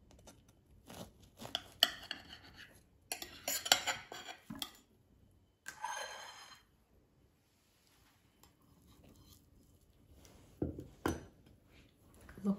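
A kitchen knife cutting through a soft baked loaf, clicking and scraping against a ceramic plate. About six seconds in there is a longer scrape as the blade slides under a wedge. Two knocks of crockery follow near the end.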